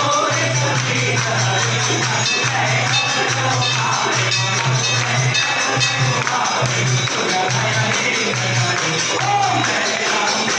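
Hindu temple aarti music: continuous jingling percussion over a low, repeating beat that keeps stopping and starting.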